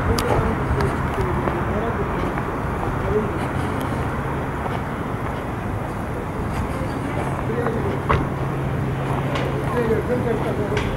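Outdoor village street ambience: steady traffic noise with a low engine hum, and people talking indistinctly in the background, with a few light clicks.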